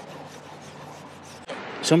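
A cloth rag wet with lacquer thinner scrubbed over a metal roof seam to clean off silicone sealant: a steady, soft scrubbing noise that stops about one and a half seconds in.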